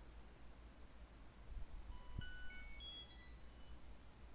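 A faint, quick run of short electronic beep tones at changing pitches, like a ringtone or notification chime, starting about two seconds in and lasting under two seconds, over a low steady hum.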